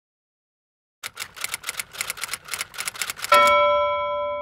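Typewriter sound effect: after a second of silence, a rapid run of key clicks, about eight a second, ending in a single carriage-return bell ding that rings on and fades.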